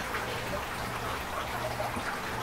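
Steady trickle of running water in an aquaponics system, with a low hum underneath.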